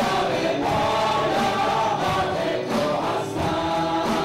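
Live worship band playing a song: several voices singing together over guitars and a drum kit keeping a steady beat.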